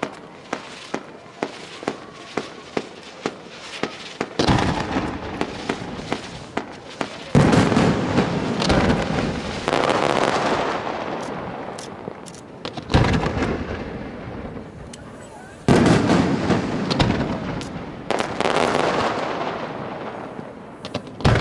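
Fireworks display: a run of quick, evenly spaced pops, about two or three a second, over the first few seconds. Then come several loud shell bursts, each followed by a long rumbling echo and crackle that slowly dies away.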